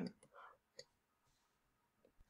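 Near silence: room tone with one faint, brief click a little under a second in.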